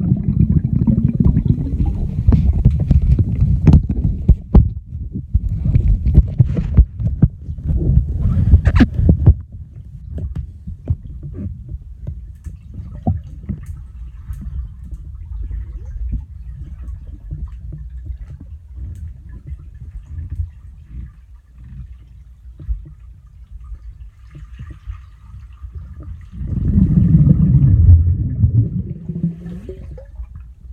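Muffled low rumbling of water sloshing against a phone's microphone while it records underwater, with frequent knocks and bumps through the first nine seconds or so. It grows quieter in the middle and swells again into a louder rumble for a few seconds near the end.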